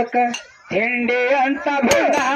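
Small metal hand cymbals clinking in the rhythm of a dollu pada folk song, dropping out for a moment about half a second in, then a male voice singing along with them.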